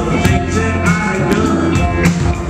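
A live rock band playing a song, with electric guitars and a drum kit; snare and cymbal hits land at a steady beat.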